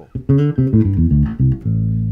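Electric bass guitar played through an EBS MicroBass II preamp: a fast run of short plucked notes, then one note held from about a second and a half in.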